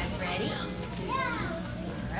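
Young children's voices, a few short high calls rising and falling, over a steady low hum.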